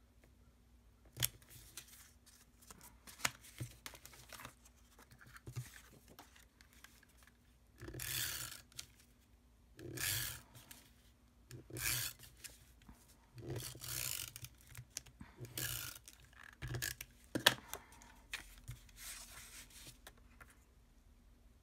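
Paper and cardstock being handled on a craft mat: a few light taps at first, then a series of short rustling, rubbing strokes every second or two, with one sharper tap near the end.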